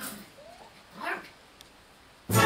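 Small dog whining: a short rising whine about half a second in, then a louder, brief cry about a second in.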